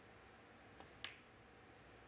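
Snooker shot: a faint tap of the cue tip on the cue ball, then a sharp click as the cue ball strikes a red, about a second in.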